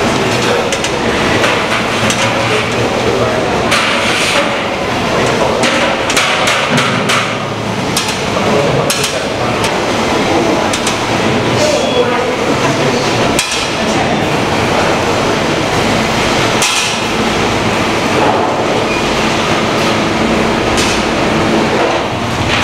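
Food-factory production floor noise: a steady machine hum with frequent knocks and clatter of plastic trays and metal racks being handled.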